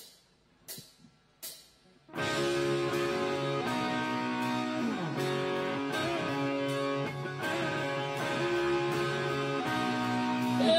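Live rock band starting a song: three evenly spaced count-in clicks, then about two seconds in the band comes in together with electric guitar chords and drums, playing the instrumental intro.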